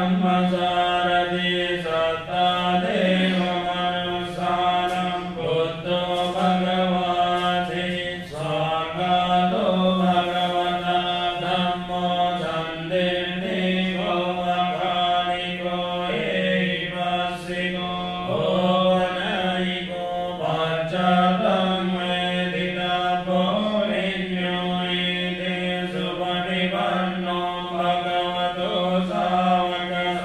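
A Buddhist monk chanting Pali paritta (protective verses) into a microphone, recited on one nearly steady pitch with short breaks for breath every few seconds.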